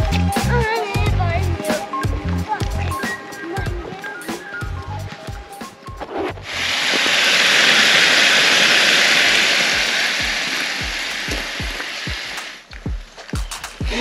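Background music with a steady beat; about six seconds in, strips of bacon start sizzling loudly in a frying pan, an even hiss that lasts about six seconds and cuts off suddenly.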